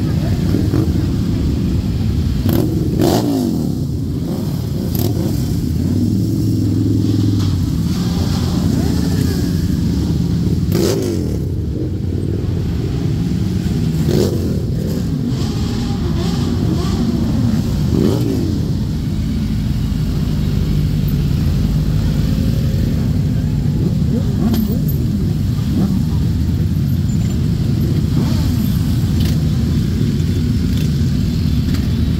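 A mass procession of motorcycles riding past at low speed, many engines running together in a continuous drone. Individual bikes rev up in turn several times as they pass.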